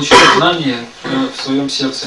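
Speech: a voice talking in short phrases, with a throat-clearing noise at the start.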